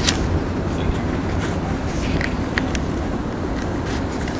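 Steady low background rumble with a few faint clicks and knocks.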